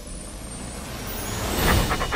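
A swelling rush of noise that builds over the two seconds. Near the end, a very large dog's quick sniffing breaths begin at close range, about six a second.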